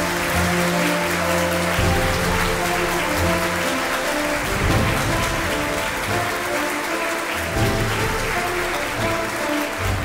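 Audience applauding over music with steady held notes.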